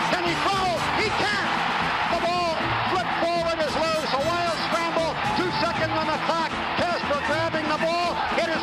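Sports announcer's excited play-by-play call of a football play over stadium crowd noise, from an old broadcast recording.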